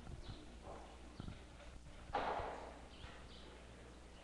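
Faint scattered knocks and shuffling as a congregation kneels down, with a brief rustle about two seconds in.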